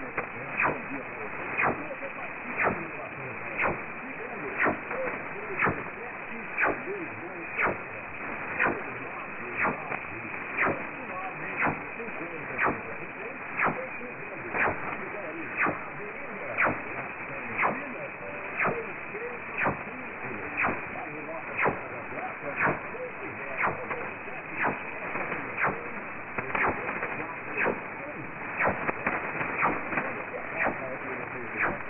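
Shortwave receiver audio from a weak broadcast signal of Radio Caiari on 4785 kHz, heard through a Perseus software-defined receiver with a narrow filter: a faint, barely readable voice buried in steady hiss, with sharp static clicks about once a second.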